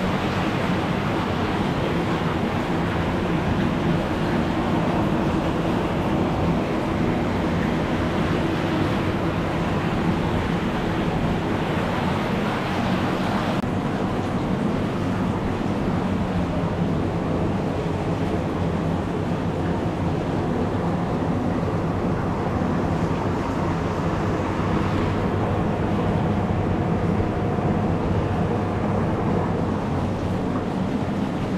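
Whirlpool spa bath with its jets running: water churning and bubbling steadily over a low, steady hum from the pump.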